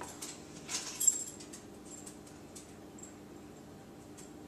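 Light handling noises of a liquor bottle and measuring spoon, a few soft clicks and a brief rustle in the first second, the loudest about a second in, over a steady low hum.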